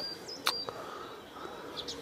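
A small bird chirping in short, repeated high notes in the background, with a single sharp click about a quarter of the way in.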